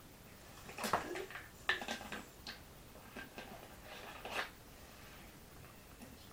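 A boy drinking from a plastic bottle and handling it: a run of short, sharp noises, the loudest about a second in.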